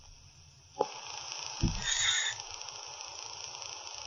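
Faint recording hiss and room noise between parts of a live recording. About a second in a click sounds and the hiss gets louder, followed by a soft low thump and a brief faint high tone.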